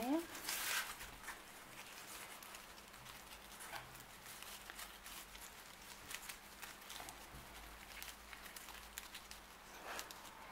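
Paper yarn (Rico Creative Paper) crackling and rustling as a large crochet hook pulls it through stitches: a scatter of light, irregular crackles, louder for a moment about half a second in. The crackle comes from the stiff paper rather than soft wool.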